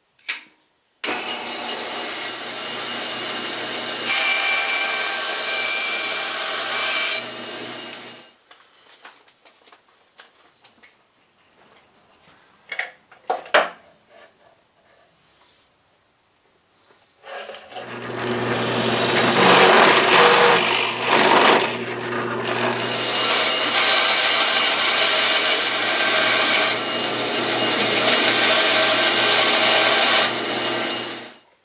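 Rockwell woodworking bandsaw running with a steady motor hum and cutting a small piece of thin plywood, louder while the blade is in the wood, then shutting off about eight seconds in. After a pause with a few knocks, power tools run again and loudly for the last twelve seconds or so: a hole drilled in the piece, then more bandsaw cutting.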